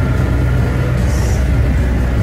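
A sailboat's inboard diesel engine running steadily under way: a constant low hum, heard from inside the cabin.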